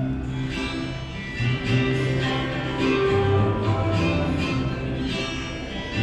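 Instrumental music: an electronic keyboard plays a strummed, guitar-like accompaniment over sustained bass notes, with strokes repeating in a steady rhythm.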